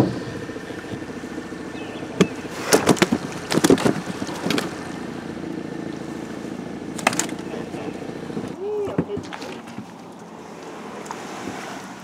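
A small boat motor running steadily at idle, with a few scattered knocks and brief voices over it; the hum stops abruptly about eight and a half seconds in.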